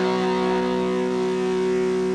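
Live rock band holding one sustained chord, with electric guitar ringing out steadily over it.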